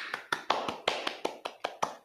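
Hand clapping heard over a video-call link: a quick, irregular run of claps, about seven a second, starting suddenly out of dead silence.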